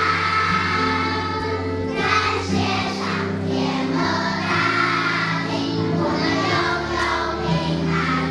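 A group of young children singing a graduation song in unison, over an instrumental accompaniment of held chords.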